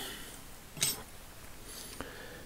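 A single short, sharp metallic click a little under a second in, from the small steel parts of a Bonney ratchet's switching mechanism being handled: its pawls, spring and detent balls, just pressed into place.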